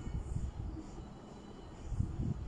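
A motorcycle running down the street, heard as a low, distant rumble that dips a little in the middle.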